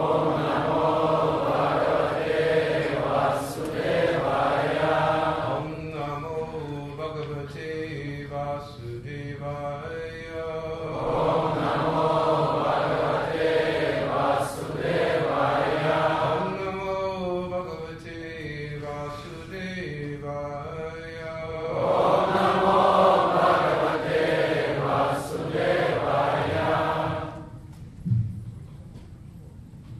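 Sanskrit verses chanted in call and response: a lead voice sings a line and the assembled congregation repeats it, the group's lines louder, in alternating stretches of about five seconds. The chanting stops just before the end.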